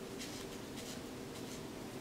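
Hands rubbing and massaging the wrists: about three soft, brief scratchy strokes of skin and wristbands rubbing together.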